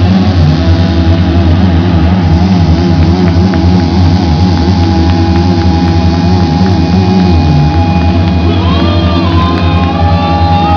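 Live rock band playing loud, bass-heavy music with a steady held tone above it; a voice comes in near the end.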